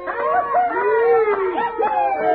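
Several canines howling together, long overlapping howls that rise and fall in pitch, over a held note of background music.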